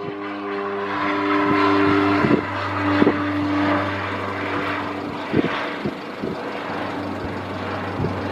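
Twin Otter's two PT6A turboprops at climb power overhead: a steady propeller drone with a few held tones, swelling for the first few seconds and then slowly fading as the aircraft climbs away. A few short knocks sound over it.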